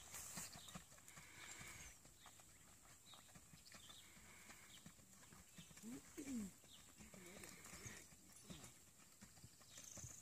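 Faint, soft hoofbeats of a Rocky Mountain Horse mare moving at a brisk gait under a rider on grass and dirt. A short pitched sound that slides up and down comes about six seconds in.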